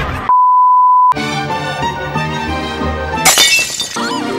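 A loud, steady, high-pitched beep lasting under a second, dropped in as an editing gag, followed by cartoon background music. A short burst of crashing noise comes near the end.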